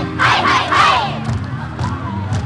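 A group of dancers shouting calls together in time with the dance music, about three sharp shouts in the first second, each falling in pitch, with the music running on underneath.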